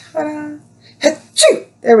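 A woman's wordless vocal sounds: a short held voiced sound, then two quick breathy bursts, before she starts to speak.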